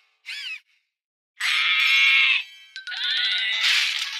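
Cartoon soundtrack: a short squeak that bends up and down in pitch, a pause of about a second, then a loud held musical sting with a ding, followed by sliding tones. The sound is thin, with no bass.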